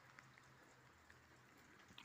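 Near silence: faint hiss of light rain with a few soft drip ticks.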